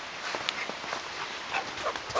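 Footsteps crunching in snow: a few scattered short crunches over a quiet background.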